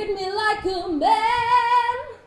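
A woman singing solo in a high voice. A short phrase slides up into a note, then she holds one long note that breaks off at the end.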